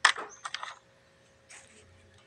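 Light plastic clatter as a short cut piece of corrugated flexible hose is set down among the others: one sharp click, then a couple of softer clicks about half a second later.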